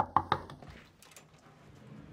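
Knocking on a wooden hotel-room door: a quick run of raps in the first half second, fading, then only faint room tone.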